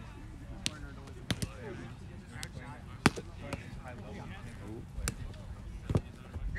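Roundnet (Spikeball) rally: a series of sharp slaps as players' hands hit the small rubber ball and the ball bounces off the trampoline net, about eight hits in quick succession, the loudest about three seconds in.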